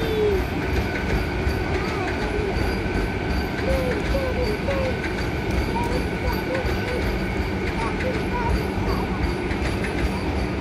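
Vande Bharat Express electric multiple-unit train running past, a steady rumble and rush of wheels on rails that keeps on without a break, with a few faint steady high tones above it.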